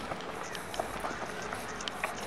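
Footsteps of a person walking on a concrete sidewalk, a few sharp steps standing out over a steady outdoor hubbub with faint voices.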